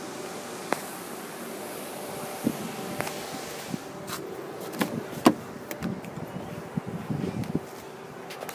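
Sharp clicks and knocks as a BMW X6's door is handled and opened, the loudest click about five seconds in, over a steady faint hum and hiss.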